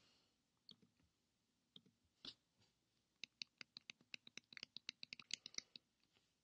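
Faint clicking of a computer mouse: a few scattered clicks, then a quick run of clicks starting about three seconds in and lasting about two and a half seconds.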